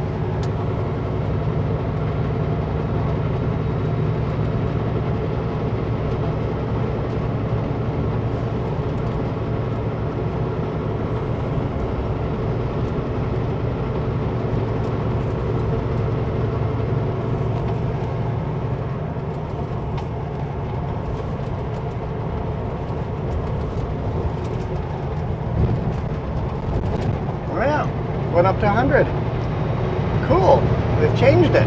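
Kenworth W900L semi truck running at steady highway speed: a continuous low diesel engine drone mixed with road noise.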